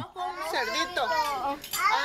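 A small child speaking in a high-pitched voice.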